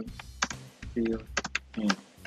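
Typing on a computer keyboard: an irregular run of key clicks as a line of text is typed.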